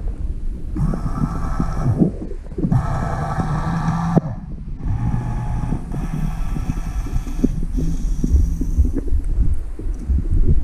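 Toy remote-control boat's electric motor whirring in four bursts of one to two seconds each, switching on and off, over a muffled low rumble of water heard underwater.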